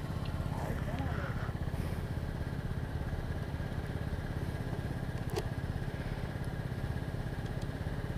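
125cc scooter's single-cylinder engine idling steadily, with one short click about five seconds in.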